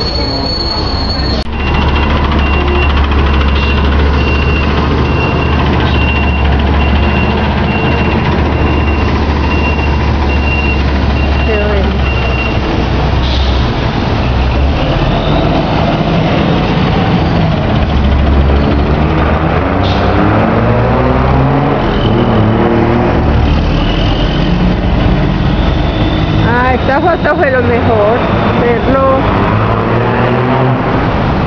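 Metroplus city bus engine running with a steady low rumble as buses drive past the station, with indistinct voices near the end.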